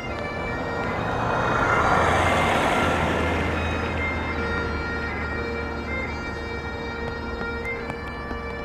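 Bagpipes playing a lament, partly covered by a vehicle whose noise swells to a peak about two seconds in and then eases off. A low engine rumble carries on underneath.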